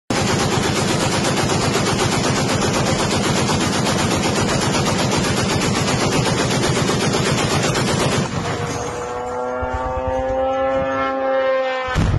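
Heavy .50-calibre M2 Browning machine gun firing one long continuous burst for about eight seconds, then stopping. After it, a steady droning engine note, rising slightly in pitch, cuts off abruptly at the very end.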